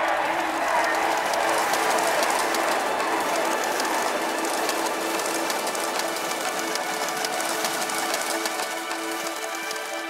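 A crowd applauding and cheering, the dense clapping slowly dying away, over soft sustained music notes that come forward toward the end.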